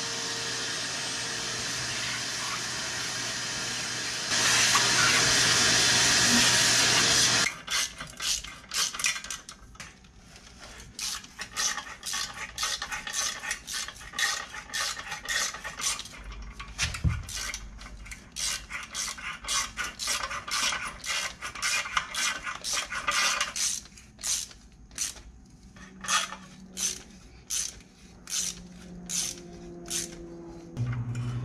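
A power drill runs steadily for about seven seconds, getting louder about four seconds in, then cuts off. A hand ratchet wrench then clicks in quick runs with short pauses as the bolts holding the winch mounting plate to the concrete floor are tightened.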